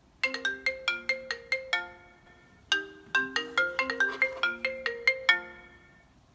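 An iPhone ringing with an incoming call: a ringtone of quick notes in two phrases, with a short break about two seconds in, stopping shortly before the end.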